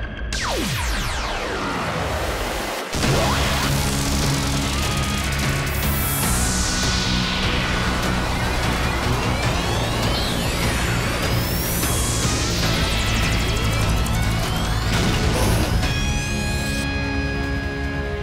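Cartoon battle sound effects over dramatic background music: an energy-beam attack with long falling whooshes, crashes and blasts. A sudden loud hit comes about three seconds in, and near the end the effects die away, leaving the music.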